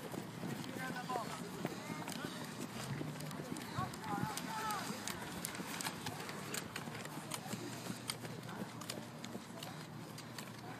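Football players' running footsteps on a grass field, a patter of many quick light impacts, with shouting voices around them.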